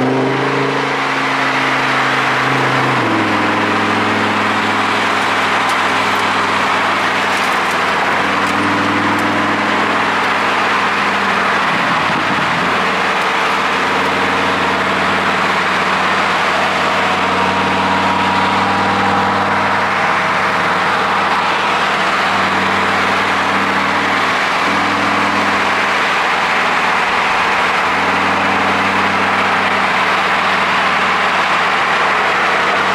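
Cars driving slowly side by side: a steady engine note whose pitch shifts in steps as the speed changes, over an even rush of wind and tyre noise.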